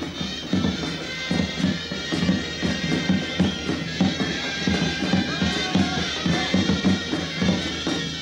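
Traditional Greek festival music: shrill zurna reed pipes playing a melody over the steady beat of a daouli bass drum.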